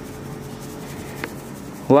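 Soft, steady rustle of sugar being shaken through a stainless-steel mesh strainer, with a single light tick about a second in. A woman's voice comes in at the very end.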